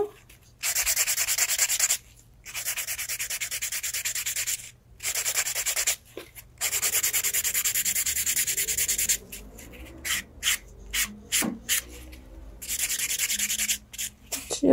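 Nail buffer block rubbed rapidly back and forth over a toenail, in several bouts of quick hissing strokes with short pauses between them. Near the end comes a run of separate short strokes before the fast buffing resumes. The buffing smooths the ridges on the nail surface.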